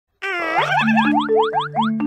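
A children's intro jingle starts. A voice says "smile", then comes a quick run of rising cartoon boing sweeps, about five a second, over held bass notes.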